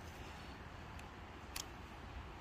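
A Microtech Combat Troodon knife blade slicing through a loop of cotton rope, heard as a faint cut with a short sharp snick about a second and a half in, over a low background rumble.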